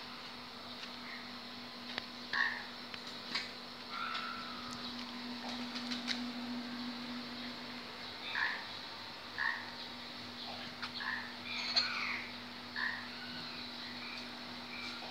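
Short squeaky calls of a small animal, several of them at irregular intervals, over a steady low hum.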